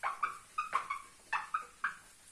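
Handheld whiteboard eraser rubbed back and forth across the board, squeaking in short, pitched chirps, about seven or eight in two seconds.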